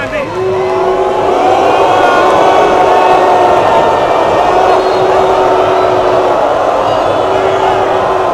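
Large football stadium crowd booing with long, drawn-out "huuu" calls, many voices held at several pitches at once, swelling about a second in.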